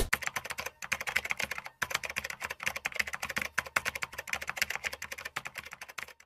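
Computer keyboard typing sound effect: a rapid, continuous run of key clicks that cuts off suddenly at the end.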